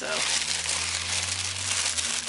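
Tissue paper being pulled open and handled by hand, a continuous papery crinkling and rustling.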